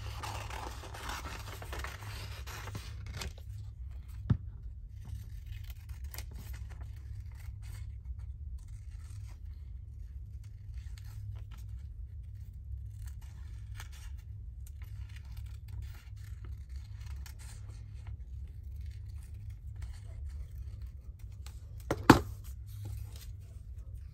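Scissors snipping through printed paper in many short cuts while fussy-cutting around a picture, with rustling of the paper sheet at the start. A sharp clack about 22 seconds in, the loudest sound, as the scissors are set down on the cutting mat, over a faint steady low hum.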